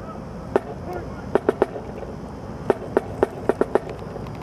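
A marching band drum playing a cadence for marching troops: sharp strokes, some single and some in quick groups of three or four.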